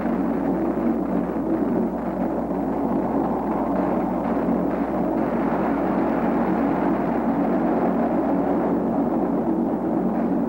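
Transport aircraft engines droning steadily, with no distinct shots or blasts.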